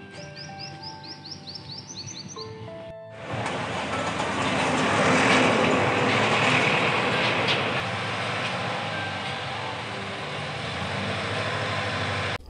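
Soft background music with a quick run of short, high, rising chirps. About three seconds in it cuts off to loud, steady outdoor street noise that runs to the end.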